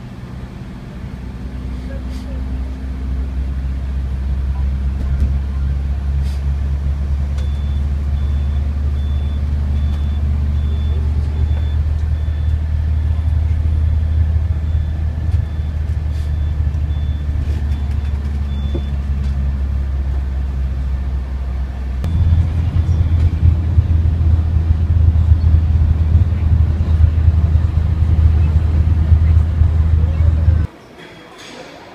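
Tour coach engine and road noise from inside the passenger cabin while driving: a low steady drone that builds over the first few seconds and grows louder about three quarters of the way through. A high electronic beep repeats at an even pace for about ten seconds in the middle.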